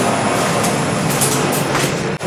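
Passenger elevator heard from inside the car: a loud, steady mechanical noise of the car running.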